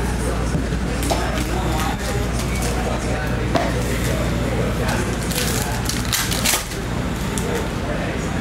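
Hands handling a cardboard trading-card box and the cards inside it: scrapes and light taps, with a cluster of short rustles a little past the middle. A steady electrical hum runs underneath.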